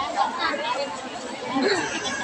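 Indistinct chatter of a seated crowd, with several voices talking at once and no single clear speaker.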